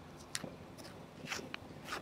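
Wrapper being peeled off an ice cream cone, with a few faint, short crackles of the wrapper.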